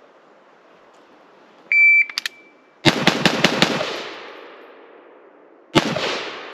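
CZ Bren 2 MS 5.56 carbine with an 11.5-inch barrel firing a fast string of six or seven shots about three seconds in, the echo dying away over the next second or so, then one more shot near the end. Just before the string comes a short, loud electronic beep.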